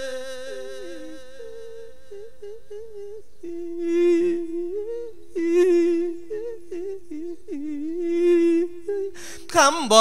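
A man's voice humming a slow, drawn-out melody of an Isan thet lae sung sermon, the pitch sliding and stepping between held notes. It swells louder three times, around four, five and a half and eight seconds in.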